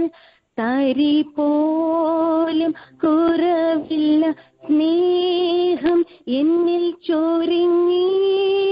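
A woman singing a gospel song solo and unaccompanied, heard over a telephone line: long held notes in phrases of a second or two, broken by short silences.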